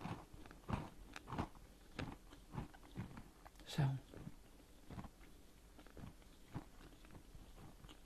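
Close-miked chewing of a crisp Kringle cookie: soft, irregular crunches about twice a second, growing fainter in the second half.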